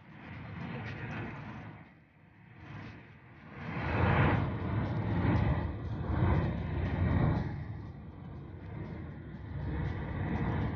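Road noise inside a moving car on a highway: a steady rumble of tyres and engine with some wind, swelling louder a few seconds in and easing off near the end.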